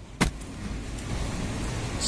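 A single sharp click about a quarter second in, then steady outdoor background noise with a low rumble.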